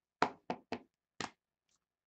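Four short, sharp knocks in about a second: a stack of trading cards tapped against the tabletop.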